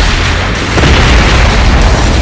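Explosion sound effect: a deep boom with a rush of noise that swells about a second in, over background music.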